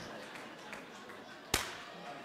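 A single sharp slap about one and a half seconds in, over quiet room tone.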